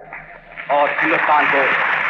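Old archival recording of a man's speech in Hindustani, thin like a radio broadcast over background noise.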